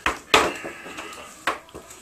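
Plastic wrestling action figures handled by hand and knocked against each other and the toy ring: three sharp clacks, two close together at the start and one about a second and a half in.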